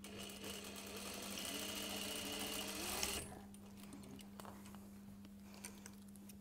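Electric sewing machine stitching a seam in cashmere fabric, its pitch rising as it speeds up, then stopping abruptly about three seconds in. A few light clicks follow as the fabric is drawn off the machine.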